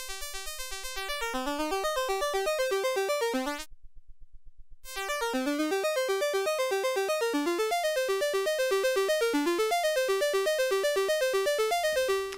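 ST Modular Honey Eater analog oscillator (CEM3340 chip) playing a rapid quantized sequence of pulse-wave notes, its timbre shifting as the pulse width is turned. A few seconds in, the tone cuts out for about a second, leaving only faint regular clicking: the pulse width has been turned too far and cancels the sound. The notes then return.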